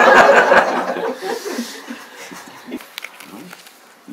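A group of listeners laughing, loudest in the first second and dying away over the next second or so, leaving a few faint scattered chuckles.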